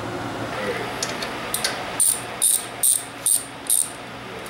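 Ratchet wrench being worked on a rear brake caliper bolt: five short bursts of clicking, about two a second, in the second half, over a steady low hum.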